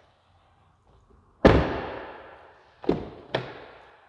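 A pickup truck's rear crew-cab door slammed shut, the loudest sound, its echo dying away over about a second and a half. About a second and a half later come two shorter clunks close together, fitting the front door's latch being pulled open.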